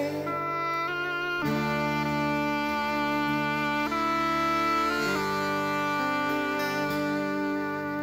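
Slow instrumental passage between sung verses of a folk song: held chords without vibrato that change note several times in the first few seconds, then sustain.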